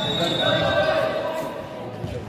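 Basketball game sounds in a large sports hall: players' voices calling out over the general bustle of play on the hardwood court, echoing in the hall.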